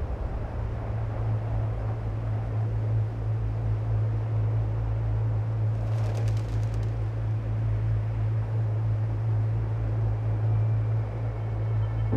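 A steady low droning rumble with a wash of noise over it, and a brief rapid high ticking about six seconds in.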